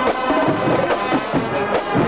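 High school marching band playing in the stands: brass and sousaphones carrying a tune over a steady drumline beat.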